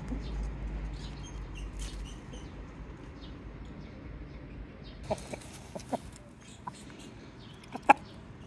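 Chickens clucking: a few short clucks about five to six seconds in, then a loud, sharp one just before the end. A low rumble fills the first few seconds.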